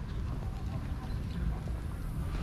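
Outdoor park ambience heard while walking: a steady low rumble with faint, indistinct voices of people strolling nearby.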